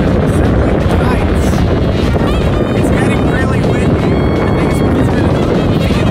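Strong wind buffeting the microphone, a loud, steady rumble that all but drowns out a man's speech.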